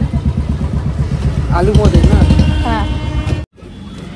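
A motor vehicle engine running with a low, fast pulsing beat, swelling to its loudest about two seconds in, with people talking over it. The sound cuts off abruptly shortly before the end.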